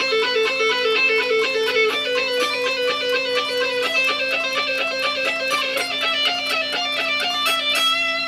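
Fender Stratocaster electric guitar playing a fast picked lick: an even stream of single notes in a repeating pattern that climbs gradually higher, settling on a held note near the end.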